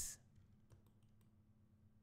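A few faint clicks of a computer mouse and keyboard in the first second or so, over a low steady hum.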